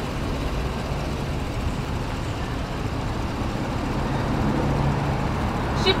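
Steady low hum of a motor vehicle engine amid street traffic noise, growing slightly louder over the seconds.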